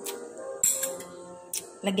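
A few light clicks and knocks from kitchen containers being handled, over quiet steady background music.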